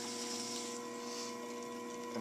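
Electric potter's wheel running at a steady speed: a constant motor hum with fainter, higher steady tones above it.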